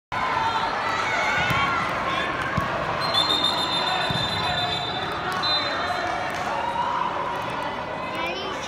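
Indoor soccer in a large echoing hall: players and spectators calling out, a few dull thuds of the ball being kicked, and a referee's whistle blown steadily for about a second and a half around three seconds in, with a short second blast a couple of seconds later.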